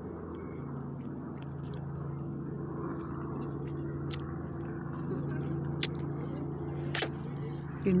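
A steady low hum holding one constant pitch, with two short sharp clicks in the last few seconds.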